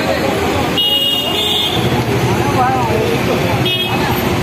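Busy city street traffic: the steady noise of buses and auto-rickshaws running, with a vehicle horn honking about a second in and again briefly near the end, over the voices of people nearby.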